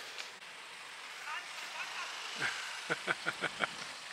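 Quiet outdoor background hiss, with a few short stretches of low speech in the second half.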